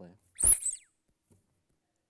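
A yellow rubber duck squeezed once, giving one short, loud, high-pitched squeak that dips in pitch at its end, about half a second in.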